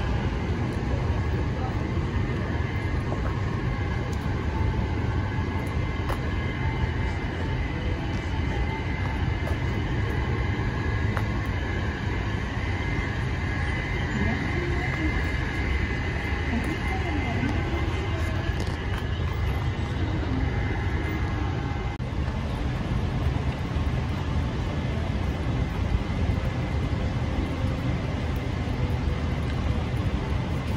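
Steady outdoor city ambience on a rooftop: a constant low rumble with an even hiss over it, and faint voices of people nearby.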